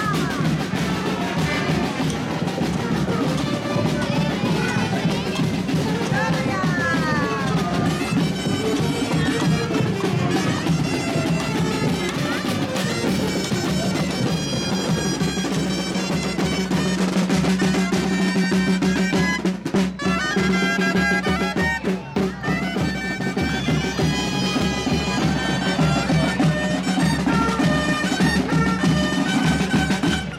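Traditional street-band music: shrill double-reed pipes of the dolçaina kind playing a lively melody with quick climbing runs, over a steady beat on drums.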